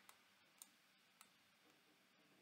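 Near silence with a few faint, short clicks of a computer mouse, one about half a second in and another about a second later.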